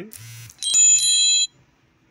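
Phone notification sound for an incoming Telegram message: a brief hiss and low buzz, then a bright, bell-like ring of several steady high tones lasting under a second and cutting off sharply.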